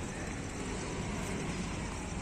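Steady outdoor background noise: a low, even rumble with a faint, fast, high-pitched pulsing on top.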